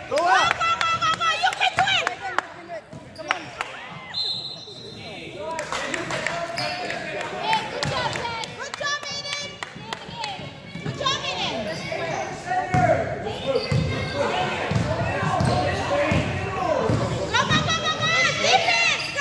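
A basketball bouncing on a hardwood gym floor, with voices echoing around the hall and a short, high steady whistle tone about four seconds in.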